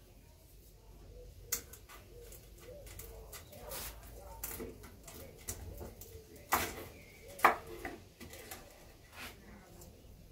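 A knife cutting through a smoked beef short rib on a wooden cutting board: scattered taps and clicks of the blade on the board, the loudest about seven and a half seconds in.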